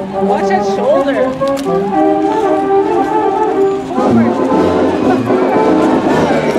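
Marching band brass playing held notes that step from one pitch to the next, with people talking over the music.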